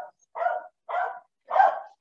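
A dog barking three times in short, evenly spaced barks.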